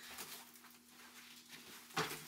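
Faint rustling and scuffing as someone shifts and handles things on a paint-covered floor, over a faint steady hum, with a sharper tap at the very end.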